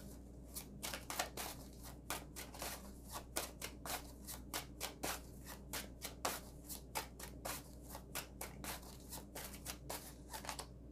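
A deck of tarot cards being shuffled by hand, overhand style: a quick run of short papery card slaps, about four a second, starting about half a second in.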